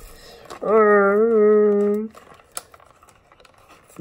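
A person's voice holding one steady, slightly wavering vocal note for about a second and a half. Around it, faint rustling and small clicks of a cardboard-and-plastic toy blister pack being handled.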